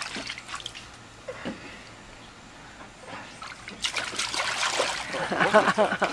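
A baby's hands and feet paddling and splashing in the shallow water of a plastic kiddie pool: light trickling splashes, quieter through the first half and livelier from about four seconds in.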